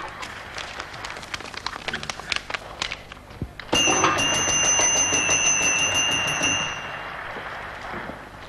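Snack packaging rustling and crinkling as it is handled. About four seconds in, a sudden louder hiss with a steady high ring starts; it lasts about three seconds, then fades.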